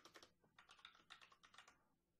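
Faint computer keyboard typing: a quick run of keystrokes that stops shortly before the end.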